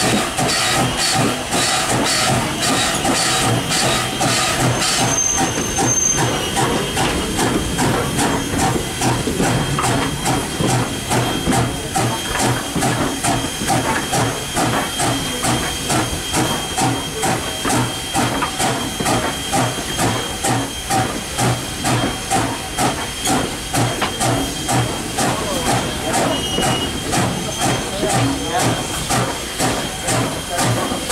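Steam locomotive No. 89, a Canadian National 2-6-0, under way, its exhaust chuffing in a regular rhythm over a steady hiss of steam.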